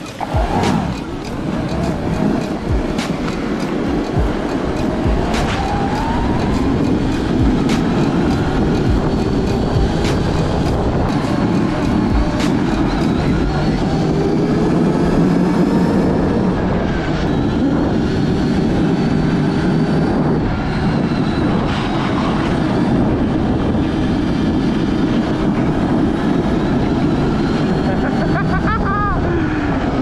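Sur Ron electric snow bike on its Track N Go track kit, riding along: a thin motor whine rises and falls with speed over a steady rumble from the track. A few sharp knocks come in the first few seconds.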